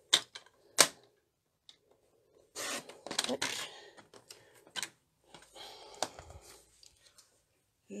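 Paper trimmer cutting cardstock: sharp plastic clicks of the blade carriage and cutting rail, twice in the first second and again later, with short scraping stretches as the blade slides along the track.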